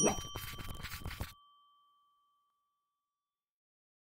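A bright bell-like chime sound effect: a single ding of a few high tones that rings out and fades over about three seconds, over a short clatter that stops after about a second.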